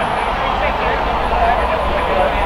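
Distant voices of footballers calling to each other over a steady, fairly loud outdoor rumble.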